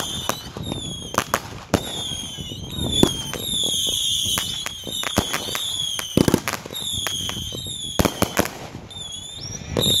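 Consumer fireworks going off in a finale barrage: many sharp bangs and crackles, with a string of high whistles, each about a second long and dipping slightly in pitch.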